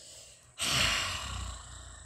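A woman's long sigh, a breathy exhale close to the microphone with a low rumble of breath. It starts suddenly about half a second in and fades out over about a second and a half.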